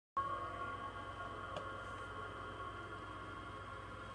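A steady electronic drone of several held tones, starting abruptly and slowly fading, over a low hum.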